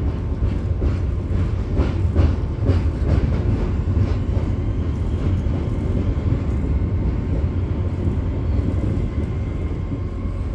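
Class 465 Networker electric multiple unit heard from inside the carriage, running with a steady low rumble. A run of sharp clicks from the wheels comes about two to three seconds in.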